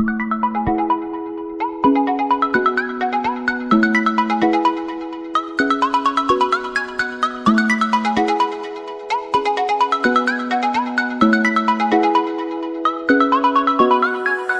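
Background music: a bright, ringtone-like electronic melody of quick notes over held bass notes, repeating in a steady loop.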